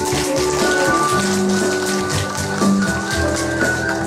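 Instrumental music of the song's accompaniment, with an audience clapping their hands over it in many quick, sharp claps.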